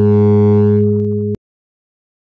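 A single low synthesizer note from LMMS's TripleOscillator instrument, held at a steady pitch and then cut off abruptly about one and a half seconds in. It is the note sounded as a preview while its velocity is set in the piano roll.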